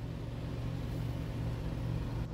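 Steady low machine hum, even throughout.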